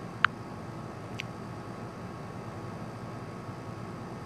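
Steady faint background room hiss and hum, with one short sharp click about a quarter second in and a fainter click about a second in.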